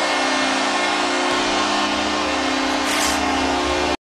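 Arena horn sounding one long steady chord over arena crowd noise.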